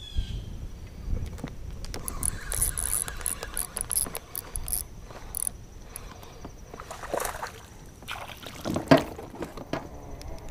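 Light knocks, clicks and rattles from a fishing kayak and its tackle being handled on the water, over a low rumble. There is a sharper knock near the end.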